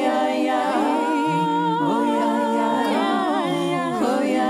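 Unaccompanied voices humming and singing wordlessly in harmony, a cappella, holding long notes with vibrato while the chord shifts every second or two.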